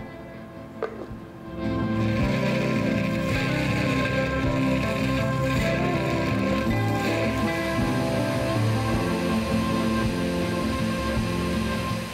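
Countertop blender running steadily as it purees eggs, oil, chopped carrots and raisins into a smooth batter. It starts about two seconds in and stays loud and even.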